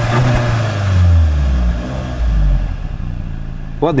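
Skoda Superb's 2.0 TSI turbocharged four-cylinder petrol engine heard at the exhaust tailpipe, its revs falling back from a light blip to a low idle over about two seconds. It then settles into a gentle purr at low revs.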